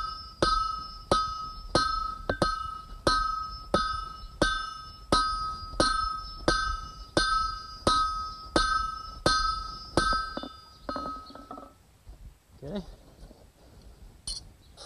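An eight-pound sledgehammer strikes hot steel on an anvil in steady blows, about one every 0.7 seconds, drawing the steel out. Each blow rings out from the anvil. The hammering stops about 11 seconds in.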